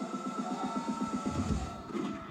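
Live concert music with an electronic synthesizer part: a fast, even pulsing rhythm over a steady high tone, with deep bass coming in about one and a half seconds in.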